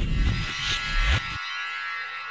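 Logo sting sound effects: whooshes with a heavy low end that cut off abruptly about one and a half seconds in, leaving a sustained electronic tone.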